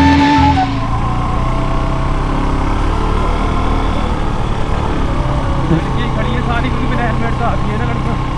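Guitar background music cuts off about half a second in. A sport motorcycle then runs at a steady cruising speed, its engine mixed with wind and road noise.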